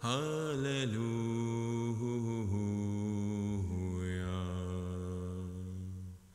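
A man chanting Hebrew prayer solo: a long unbroken line of held notes that steps down in pitch, stopping near the end.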